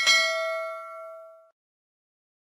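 A single bell-like chime sound effect, the notification-bell ding of a subscribe-button animation, struck once and ringing out for about a second and a half.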